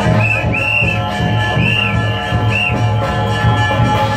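Chinese lion-dance troupe percussion: a steady drum beat under ringing gongs and cymbals. Four short, high whistle notes cut through in the first three seconds.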